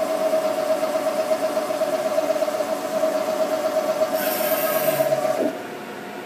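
Haas CNC vertical mill's spindle running with a steady whine while the tool traces above the part without cutting. Shortly before the end a brief high hiss sounds, and then the whine stops abruptly as the spindle shuts off at the end of the program.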